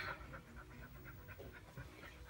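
A dog panting quickly and faintly, excited.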